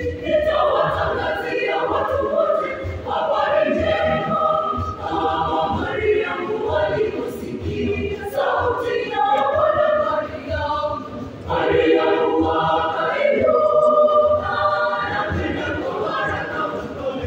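Youth choir of boys and girls singing together, in phrases of a few seconds with brief breaks between them.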